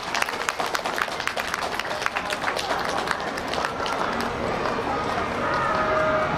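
Audience clapping, dense at first and thinning out over the first few seconds, with a few voices heard toward the end.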